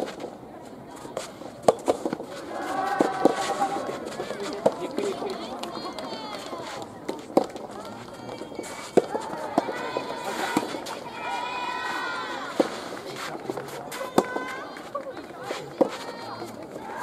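Soft tennis rallies: the soft rubber ball is struck by rackets with sharp pops every second or two, and players and spectators shout and call between the hits.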